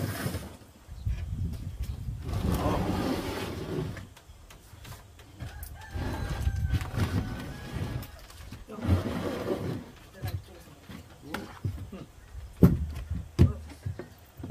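Chopsticks and dishes clicking and knocking on a table, with several sharp clicks in the last few seconds. Earlier there are stretches of muffled, indistinct sound.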